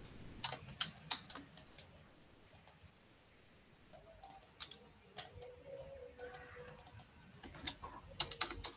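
Typing on a computer keyboard: irregular key clicks in short runs with pauses between them.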